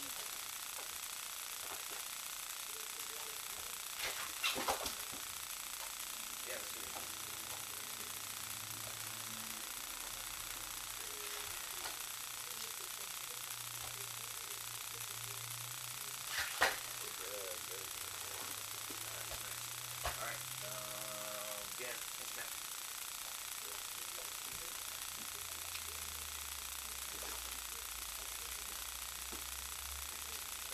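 Martial arts practice on foam mats: a few short thumps and slaps from bodies and uniforms, the loudest about 17 seconds in, under quiet low talk and a steady hiss.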